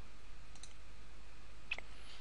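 A computer mouse button clicking once near the end, faint over a low, steady background hum.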